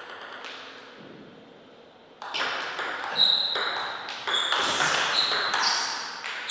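Table tennis ball hit back and forth in a rally. Sharp clicks of the ball on the rackets and table begin a little over two seconds in and come about twice a second, each with a short ringing ping.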